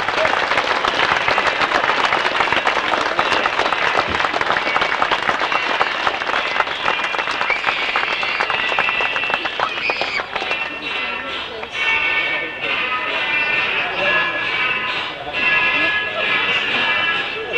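Crowd applauding after a name is announced, the clapping dying down about ten seconds in, with music and voices underneath.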